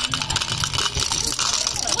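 Printed M&M candies spilling out of a metal chute into a plastic cup: a rapid rattle of many small clicks.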